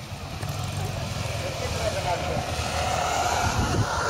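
Town street ambience: road traffic running steadily, with people's voices in the background, growing somewhat louder.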